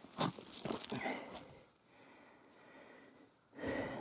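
Short rustling and scraping handling noises in the first second and a half, then a faint lull.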